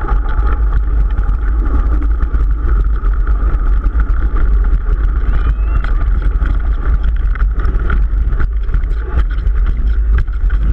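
Mountain bike riding fast down a loose, rocky dirt trail: heavy, continuous wind rumble on the microphone over tyre noise on gravel, with scattered clicks and rattles from the bike.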